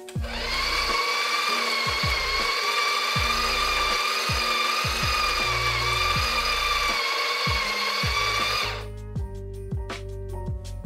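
Breville Barista Express espresso machine's pump running steadily with a high, even whine, then cutting off suddenly near the end.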